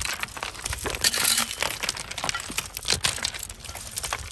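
Small metal hand rake scraping through loose broken rock, the stones clattering and clicking against each other and the tines in a rapid, irregular stream.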